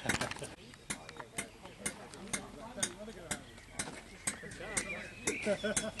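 Faint background voices of people talking, with a sharp click about twice a second.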